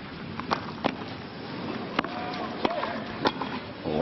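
Tennis rally on a clay court: a string of sharp racket-on-ball hits and bounces, roughly one every second or so, over a steady crowd background.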